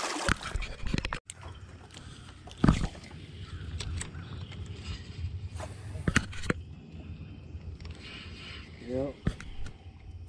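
A small largemouth bass splashing back into the water, then sharp clicks and knocks of fishing rod and reel handling, the loudest a bit under three seconds in, over a low steady hum.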